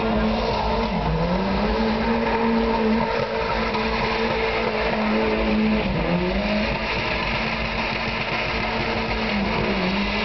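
Car engine held at high revs in a burnout, rear tyres spinning and squealing on the pavement. The revs dip briefly about a second in, again around six seconds in, and near the end, then climb back.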